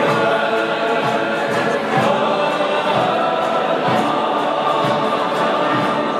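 Music: a choir of many voices singing in held notes.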